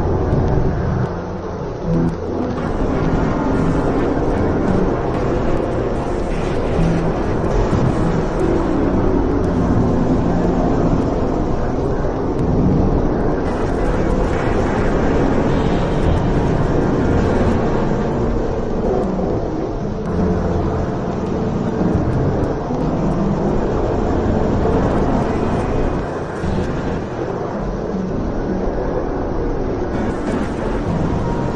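Dense, loud, rumbling noise drone from a dark ambient soundscape, continuous and without any clear melody or beat, briefly dipping near the start and again about four seconds before the end.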